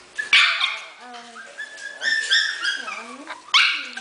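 Four-week-old Havanese puppies whimpering and yipping in short, high-pitched cries. Two loud breathy bursts come in, one near the start and one near the end.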